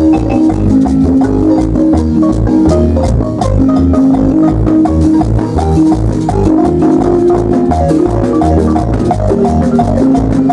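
Guatemalan marimba band playing dance music live: long held melody notes and quick mallet notes over a steady, repeating bass beat.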